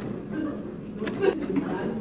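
Milk tea poured from a glass measuring jug onto ice in a tall plastic cup, with a couple of sharp clinks about a second in. Low voices murmur in the background.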